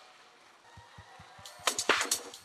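Concert backing track between songs: the last note of a song fades almost to nothing, then the intro of an electronic dance track starts, with a low, quick beat about halfway through and sharp percussive hits coming in near the end.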